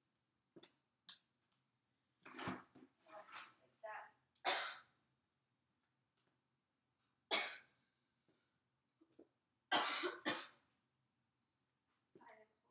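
A person coughing repeatedly: a fit of several coughs about two seconds in, a single cough in the middle, and a quick double cough near the end, with a couple of light clicks just before the first fit.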